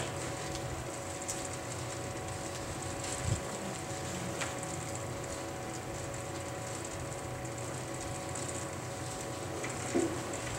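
Steady room hum with a few faint steady tones, and soft rustles of Bible pages being turned, with a light bump about three seconds in.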